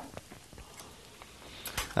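Faint clicks and handling noise from a vinyl record being set on a turntable, with a few more small clicks near the end. No music plays yet.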